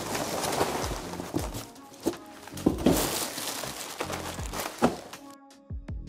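A heap of foil-lined plastic crisp packets crinkling and rustling as they are tipped out of a cardboard box onto a wooden workbench. The rustle is densest for the first few seconds and thins out, with background music underneath.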